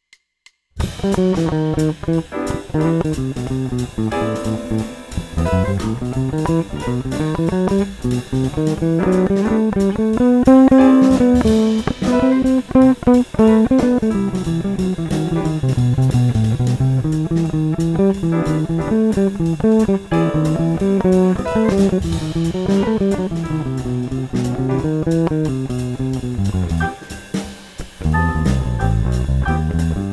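Electric bass guitar playing a melodic line on the Lydian ♯9 scale in C (C, D♯, E, F♯, G, A, B), climbing and falling through its notes, so that both the major and the minor third sound over a major-seventh chord.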